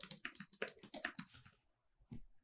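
Typing on a computer keyboard: a quick run of about a dozen keystrokes for about a second and a half, then the typing stops.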